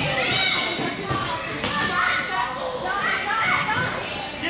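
Children shouting and calling out during a youth indoor soccer game, their voices overlapping in a large hall, with a couple of thuds from play about a second and a half in.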